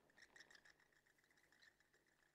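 Near silence in a gap between pieces of background music, with only a few very faint ticks in the first second.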